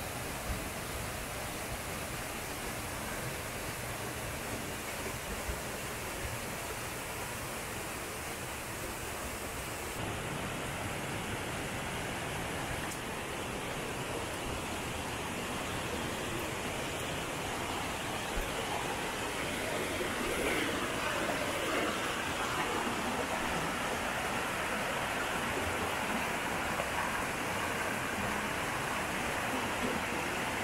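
Waterfall and rocky mountain stream rushing, a steady noise of falling and tumbling water. The sound changes abruptly about ten seconds in and grows slightly louder later on.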